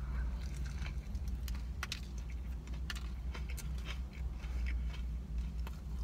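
Biting and chewing a fried chicken sandwich with crisp romaine lettuce: scattered sharp crunches and clicks of eating, over a steady low hum.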